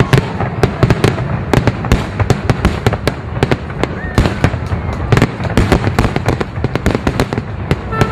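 Aerial fireworks display going off: many sharp bangs in quick, irregular succession, several a second, over a continuous low rumble.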